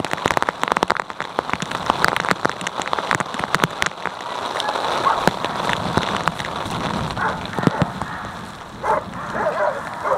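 Dense, irregular crackling and clicking for the first four seconds, giving way to a steady noisy hiss, with a dog giving a few short whines near the end.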